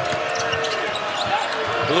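A basketball being dribbled on a hardwood arena court, over steady arena crowd noise, in a live TV broadcast.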